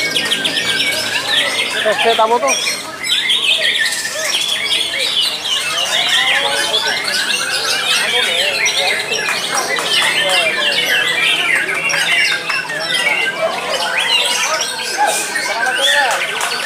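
Many caged songbirds singing at once in a songbird contest, a dense overlapping stream of whistles, chirps and trills with no pause.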